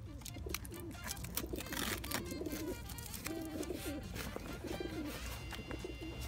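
A pigeon cooing in several short, low, wavering phrases, over small clicks and rustles of hands fastening a strap on a fabric scooter leg cover.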